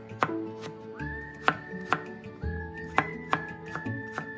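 Chinese cleaver chopping peeled water chestnuts into small dice on a cutting board: sharp knocks of the blade on the board, unevenly spaced at about two a second.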